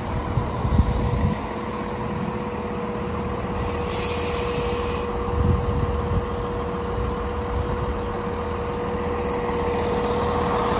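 Class 170 Turbostar diesel multiple unit moving along the platform, its diesel engines running with a steady whine over a low rumble. There is a short hiss about four seconds in and a few low thuds.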